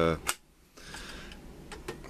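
A man's voice trailing off at the start, then faint room noise with a small click just after the speech and a couple more small clicks near the end.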